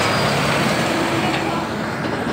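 Scania truck hauling a grain semi-trailer passing close by: diesel engine running under loud tyre and road noise, easing off slightly as it goes past.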